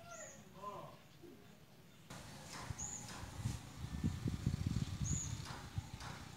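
Outdoor ambience from a garden. There are a few faint calls in the first second, then two short high chirps, likely from a small bird, near the middle and again near the end. A low, uneven rumble, loudest in the second half, runs beneath them.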